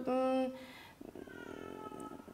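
A woman's voice holding a drawn-out hesitation vowel on one steady pitch for about half a second, then dropping to a faint, quiet murmur.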